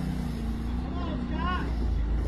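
Side-by-side UTV engine running steadily under load as it climbs a steep sand slope. About a second and a half in, a person's brief shout rises and falls over it.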